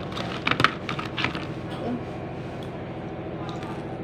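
Electric hair clipper humming steadily while a plastic number 3 guard comb is clicked onto it, with a cluster of sharp clicks in the first second or so.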